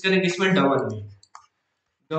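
A man's voice talking for about a second, then a single short click and dead silence.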